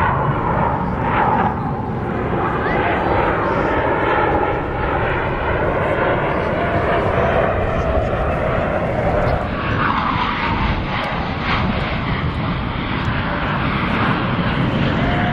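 Steady jet engine noise from Blue Angels F/A-18 Hornets flying overhead in a four-ship formation.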